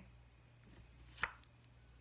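A single sharp click of a tarot card snapping free as it is drawn from the deck just past halfway, with a couple of faint ticks of the cards before it, over a faint low hum.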